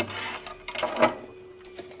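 Handling noise from a charger cable and plug being set down in a cabinet: a sharp click at the start, then a few light clicks and rustles.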